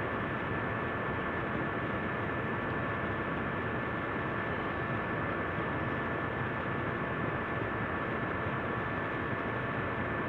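Steady background hiss with two faint, steady high-pitched tones running under it and no distinct event: the recording's room tone and noise floor.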